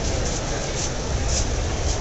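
Steady low rumble and noise of a ride-on Dalek prop rolling along a smooth hall floor.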